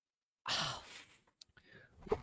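A person's breathy sigh, starting about half a second in and fading out within a second, followed by a single faint click.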